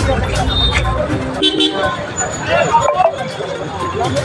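Low traffic rumble along a highway, with a short vehicle horn toot about a second and a half in.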